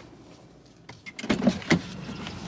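A quick cluster of sharp clicks and clunks about a second in, from the car's driver door being unlatched and pushed open.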